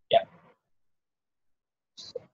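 A single short spoken "yeah", then dead silence.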